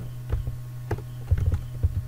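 Computer keyboard keystrokes: a handful of irregular clicks as a line of code is edited. Beneath them runs a steady low hum.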